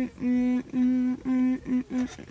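A woman humming 'mm' with her mouth closed over a mouthful of food: about five hums on nearly the same pitch, the last two shorter.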